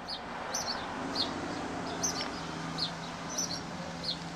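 A small bird chirping repeatedly: short, high, falling chirps, one or two a second.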